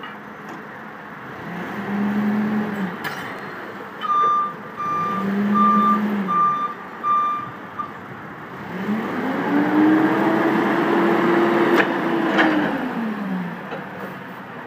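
GM engine of a 2006 Daewoo G25P propane forklift revving up and down twice as it manoeuvres, with its reversing alarm beeping steadily for about four seconds in the middle. Near the end the engine is held at a higher rev for several seconds while the mast lifts the forks, then drops back.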